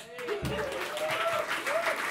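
Audience applauding, with whoops and cheers that rise and fall in pitch over the clapping.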